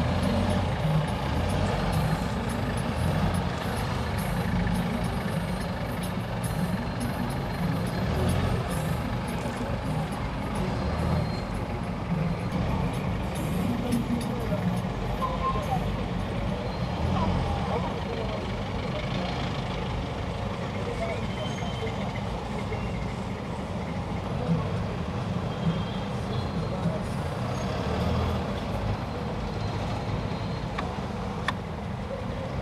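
Steady low rumble of slow, congested city traffic heard from inside a vehicle's cabin, engines idling and crawling, with indistinct voices in the background.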